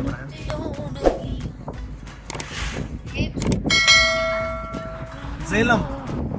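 A bell-like chime sounds about four seconds in and rings steadily for over a second before cutting off. It fits a subscribe-bell sound effect. Under it runs the low road rumble of the car, and near the end a voice sings or speaks briefly.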